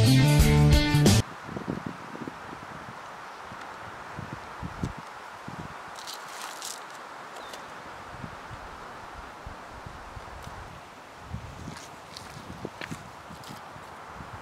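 Guitar music that stops about a second in. Then low outdoor sound with wind gusting on the microphone and light knocks and rustles of wood being laid in a stone fire ring.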